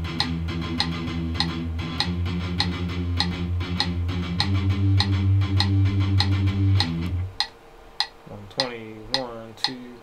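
Electric guitar playing a palm-muted chugging riff on its lowest string, stepping up in pitch about halfway through, over a metronome's steady clicks. The playing stops about seven seconds in, leaving the clicks and a few counted words.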